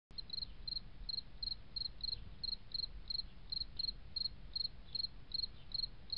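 A cricket chirping steadily, about three short high-pitched chirps a second, each a quick burr of a few pulses, over a faint low rumble.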